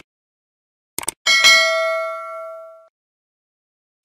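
Subscribe-button sound effects: two quick mouse clicks about a second in, then a single notification-bell ding that rings on and fades out over about a second and a half.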